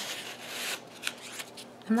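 Paper rustling as a kraft-paper-wrapped package and a printed paper card are handled: a burst of rustle in the first part, then a light tap about a second in and a few faint rustles.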